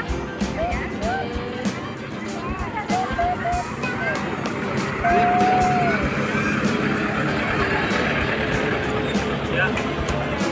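Crowd voices and children calling out, with music underneath. About five seconds in, a louder, steadier noise builds as a passenger tram pulling open trailer cars rolls past.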